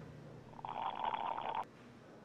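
A loud slurp from a drink, a rattling sucking noise about a second long that stops suddenly.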